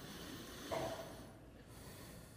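Quiet room tone in a pause between sermon sentences, with a faint short breath-like sound about three-quarters of a second in.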